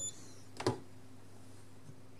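A single short click from a RusGuard R-10 EHT reader-controller about half a second in, as it reads a key fob and switches power off to the electromagnetic lock, over a faint steady hum.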